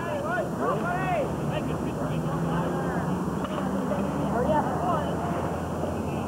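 Indistinct distant voices of baseball players and spectators calling out and chattering, over a steady low hum.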